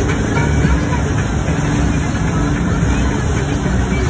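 Wake boat's engine running steadily under way, mixed with the rush of the churning wake water behind the stern.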